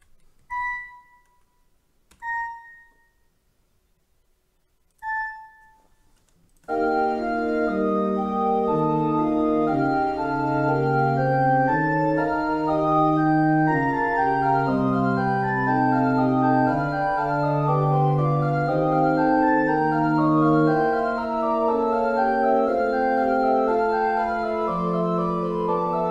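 Three short, separate high notes, then about seven seconds in, a synthesized pipe organ starts playing back a fugue passage from the notation software. Fast running sixteenth-note lines sound in the upper voices over a slower eighth-note bass line and continue steadily.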